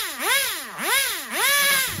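Small nitro RC car engine (a glow-fuel two-stroke) revving up and down in quick throttle blips, about three rises and falls in pitch, the last held high briefly near the end.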